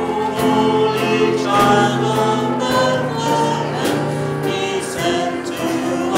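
A man and a woman singing a song together with instrumental accompaniment, in long held notes.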